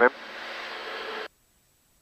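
Steady drone of the Diamond DA42 TwinStar's twin engines and cabin in a climb, picked up through the pilot's open headset microphone on the intercom. It cuts off suddenly a little over a second in, as the intercom's voice-activated squelch closes the mic.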